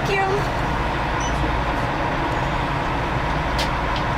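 Steady low rumble of idling car engines and traffic inside a parking structure, heard from a stopped car with its window down.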